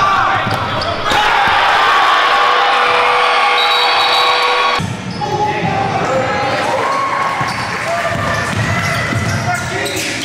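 A basketball being dribbled on a hardwood gym floor, its bounces knocking repeatedly in the second half, with voices over it. A steady held tone fills the first few seconds and stops abruptly.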